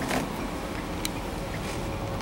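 Steady low hum of background noise, with a couple of faint clicks.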